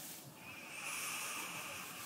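A long, slow breath in through the nose, sniffing an open essential-oil bottle held just under the nose. It is a soft, even hiss that starts about a third of a second in and lasts about a second and a half.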